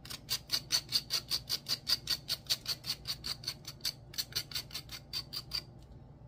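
Knife scraping the burnt surface off a slice of toast in quick, even strokes, about five a second, with a brief pause about four seconds in.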